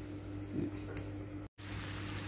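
Chicken and potatoes simmering in a pan over a low gas flame: a faint, steady bubbling hiss over a low hum, with a brief dropout about one and a half seconds in.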